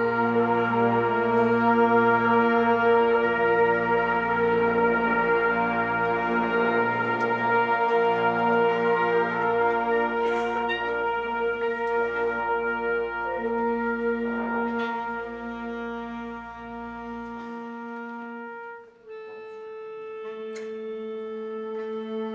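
Concert band playing long sustained chords, with brass and woodwinds over a low tuba and string bass line. The band holds full, loud chords at first, eases off, breaks briefly near the end, then sets in on a softer chord.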